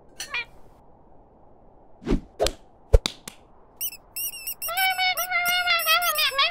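Cartoon sound effects: a few short knocks, then from about four seconds in a high-pitched, squeaky, chirping voice chattering rapidly with rising and falling pitch.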